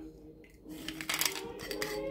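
Ice rattling and glass knocking against a stainless-steel cocktail shaker tin after straining a drink, with a few sharp clinks in the second half.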